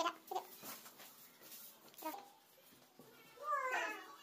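Chicken clucking: a few short calls, then a longer call near the end.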